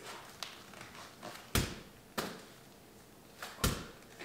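A light ball thrown against an indoor wall and caught in wall-ball reps: two sharp thuds about two seconds apart, with fainter knocks between them.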